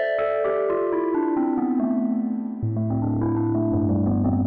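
Omnisphere synthesizer patch 'Lonely Satellite', an electric-piano-like keyboard sound over a swelling pad, played live on a keyboard: sustained notes step downward, a low bass note comes in a little past halfway, and the line starts to climb again near the end.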